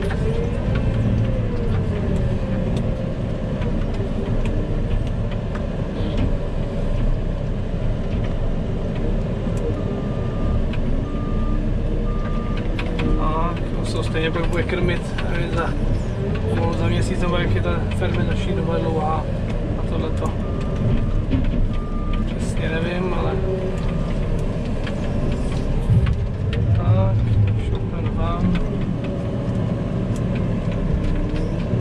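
Diesel engine of a JCB telehandler running steadily, heard from inside its cab. Two runs of short, evenly spaced beeps sound, one about ten seconds in and one about twenty seconds in.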